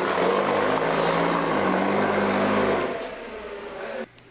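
Loud, steady running noise of a motor-driven machine: a low hum under a broad hiss, dipping slightly in pitch, then easing off about three seconds in and stopping.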